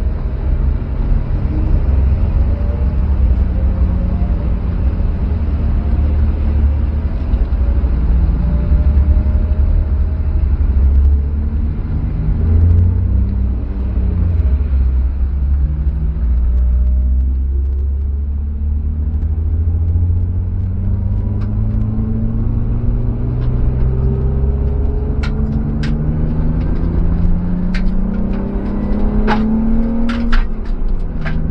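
BMW E36 320i's 2.5-litre M50B25TU straight-six heard from inside the cabin, running at low speed with a steady rumble. Over the second half its pitch rises steadily as the car accelerates. A few sharp clicks come near the end.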